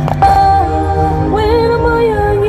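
A recorded gospel music track starts abruptly just after the beginning, with sustained held notes, and a wavering melody line comes in about a second and a half in.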